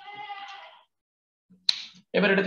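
A single bleat from a goat or sheep, under a second long, with a short sharp click near the end.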